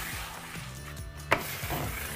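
Small plastic squeegee rubbing over pre-pasted wallpaper on a wall, smoothing out air bubbles, with one sharp click a little over a second in.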